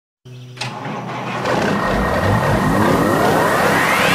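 Electronic sound-design riser for an animated logo intro: a hit just after the start, then a layered sweep that climbs steadily in pitch and loudness, like an engine revving up.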